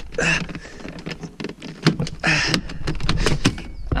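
Plastic dashboard end trim panel of a Volkswagen Touareg being pried off by hand to reach the fuse box: a run of clicks, knocks and plastic rattles as its clips let go.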